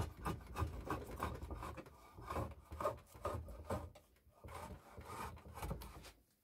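Stanley No. 55 combination plane cutting along the edge of a wooden board in a quick series of short strokes, the iron scraping and rasping through the wood with each pass; the strokes stop at the end.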